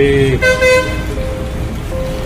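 A vehicle horn toots briefly about half a second in, over a steady low rumble of traffic.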